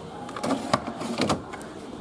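Background noise of a busy room: faint voices in the distance, a steady low hum and two sharp clicks or knocks near the middle.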